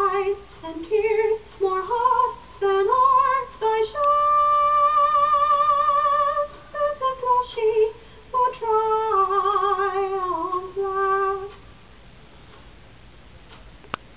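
A recording of a woman singing solo: phrases with vibrato, a long held note a few seconds in, and the singing stops near the end.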